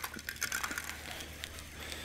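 Baitcasting reel being cranked by hand to spool braided line on tight, giving a few faint, irregular clicks over a steady low hum.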